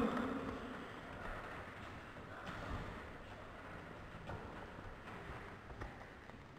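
Two wrestlers grappling on a wooden gym vaulting box: a short grunt at the start, then faint scuffling and a few soft knocks over quiet hall room tone.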